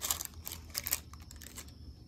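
Wax paper crinkling under fingers: a run of short crackles over the first second, then fewer and fainter.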